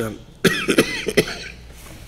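A man coughing, about three quick coughs in a row, starting about half a second in.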